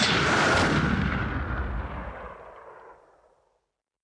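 Closing sting of an edited sound effect: a heavy boom with a long reverberant tail that fades away steadily and dies out a little past three seconds in.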